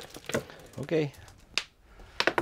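Sharp plastic clicks of a dog's recordable talk buttons being pressed, with a brief spoken word about a second in.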